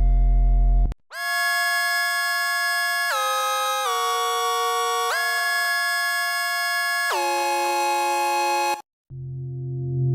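Minimoog Model D synthesizer app playing its 'Loom' lead preset: a bright, buzzy sustained tone that glides between a few held notes. About a second in, a low, bass-heavy patch cuts off just before it begins. Near the end the lead stops and a darker, lower patch ('Mini Drone') fades in.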